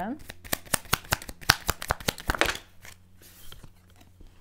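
A deck of Lenormand cards being shuffled by hand: a fast run of sharp card clicks lasting about two and a half seconds, then a brief softer rustle.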